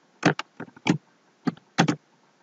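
Computer keyboard typing: a handful of separate keystrokes at an uneven pace.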